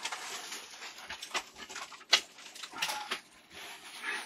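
Plastic packaging bags crinkling and rustling as they are handled and opened, in irregular crackles with a sharp loud one about two seconds in.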